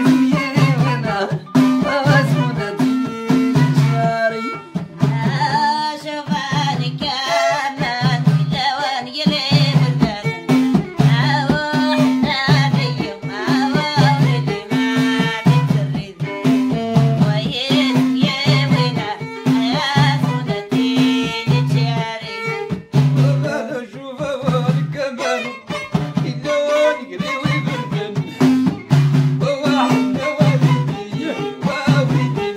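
Moroccan folk song played live: a violin bowed in the upright style over frame drums beating a steady, even rhythm, with singing voices over the instruments.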